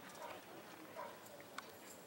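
Faint, distant voices of players calling out, with one sharp click about one and a half seconds in.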